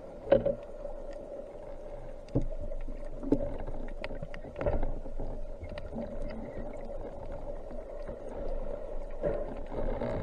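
Muffled underwater sound picked up by a submerged camera: a steady low drone with scattered faint clicks, broken by a few dull knocks, the loudest just after the start and others about two and a half and five seconds in.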